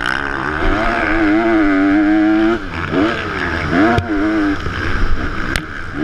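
Motocross bike engine heard from the rider's helmet, revving up and holding high revs, dropping off about two and a half seconds in, then picking up again twice as the throttle is worked. A couple of sharp knocks come near the middle and end.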